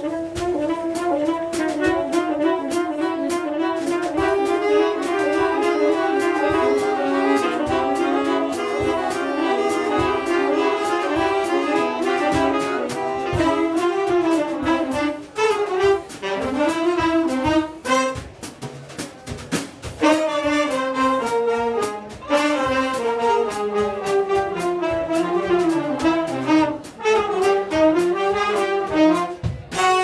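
A jazz big band playing live: trumpets, trombones and saxophones in full-section chords over a drum kit. The ensemble thins out for a few seconds a little past the middle, then the full band comes back in.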